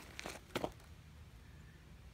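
A few brief faint scuffs and rustles in the first second, over a quiet outdoor background.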